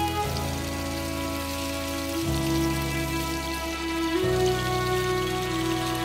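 Beef cubes sizzling in a pan, a fine steady crackle, under slow background music whose sustained chords change about every two seconds.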